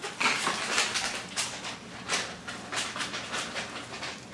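A dog making an irregular run of sharp clicks and scuffs, about two or three a second.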